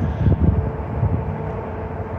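Steady low rumble of street traffic along a wide road, with a faint steady hum.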